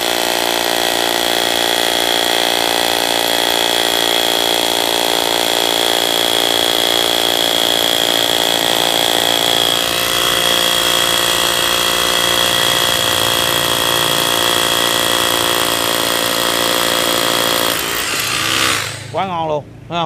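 Dekton DK-2603BL cordless rotary hammer drill boring a 10 mm masonry bit into a block of bluestone, running steadily with a high whine, its note shifting slightly about halfway. It stops near the end, once the bit has gone right through the stone, and a man's voice follows.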